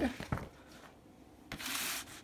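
LP record jacket sliding out of its outer sleeve: a short rustling slide about one and a half seconds in.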